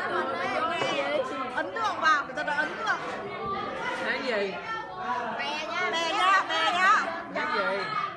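Several people talking over one another: lively overlapping chatter.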